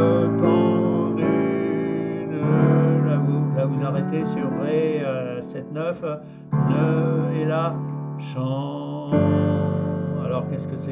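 Yamaha digital piano playing sustained chords that change about every three to four seconds. A man's voice sings the melody over them.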